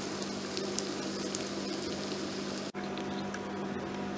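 Hot oil sizzling steadily and faintly in a miniature steel frying pan as pakoras are lifted out, with a few light clicks over a low steady hum. The sound drops out for an instant about two-thirds of the way through.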